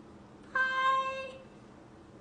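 A single short tone at a steady pitch, starting suddenly about half a second in and fading out within a second.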